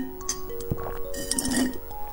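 Background music of held, chiming notes over a sip drawn through a straw from a glass bottle of jelly drink. There is a light click a little before the middle and a noisy slurping rush through the straw a little past the middle.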